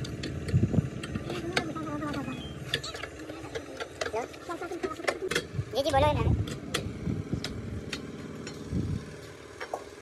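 Steel hand rammers thudding and knocking as moulding sand is packed into a steel sand-casting flask, with scattered sharp metal clinks and a few heavier thumps.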